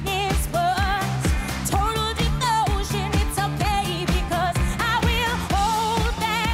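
Live pop band: a woman's strong lead vocal with wide vibrato, sung over a steady drum beat and bass.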